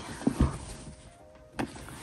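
Handling noise as a leather handbag is drawn out of a cotton dust bag: soft fabric rustling and a few knocks, the loudest a low thump about half a second in.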